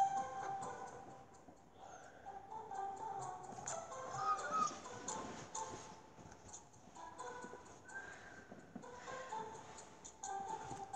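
Soft background music from a children's animated Bible story app: a gentle melody of held notes with light clicks scattered through it.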